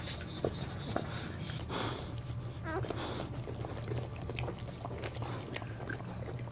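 Boxer mother licking and chewing at her newborn puppy, a run of short wet licking and mouthing clicks as she cleans it and works off the amniotic sac. A brief squeak from the puppy comes about halfway through, over a steady low hum.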